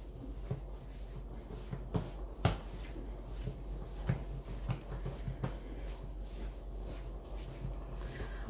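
Yeast dough being kneaded by hand on a floured worktop: soft, irregular thuds and pats, with one sharper knock about two and a half seconds in, over a steady low hum.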